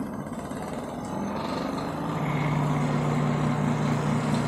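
Motor of a Camel single-tub spin dryer starting and spinning up: a steady hum that grows louder and settles into a strong steady low tone about halfway through. The dryer is running again after a loose wire was reconnected.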